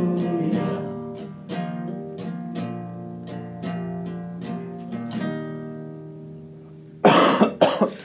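Guitar playing the song's outro as slow picked chords, one note or chord about every second, each ringing and dying away as the playing fades. About seven seconds in, a sudden loud noisy burst breaks in.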